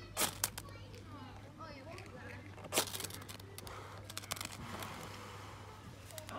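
Ferro-rod fire starter (a "flint") scraped with a metal striker to throw sparks onto paper tinder: two sharp scrapes right at the start, another a little before halfway, then a run of lighter scrapes.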